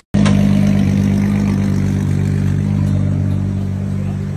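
Drift car's engine idling steadily, a low, even running sound.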